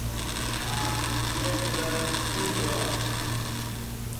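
Electric mixer grinder running, grinding a red chilli spice paste with a little water in its jar; the motor stops just before the end.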